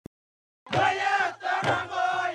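A group of voices chanting and shouting together in unison, with a heavy beat about once a second. It starts abruptly just under a second in.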